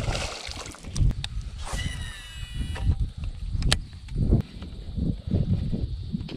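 A released largemouth bass splashes into the water at the start, followed by a run of low bumps and knocks. A brief high, falling chirping comes about two seconds in, and a sharp click just after the midpoint.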